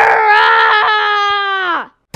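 One long, drawn-out vocal cry from a cartoon character, held on one pitch, then falling away and cutting off near the end.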